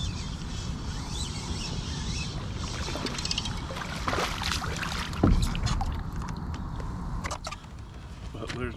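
A small hooked bass splashing at the water's surface beside a kayak as it is reeled in, over a steady low wind rumble on the microphone. A single loud thump comes a little past halfway and is the loudest sound.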